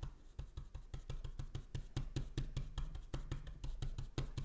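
Stencil brush pouncing paint through a plastic stencil onto a small wooden sign: quick, fairly even tapping, several dabs a second.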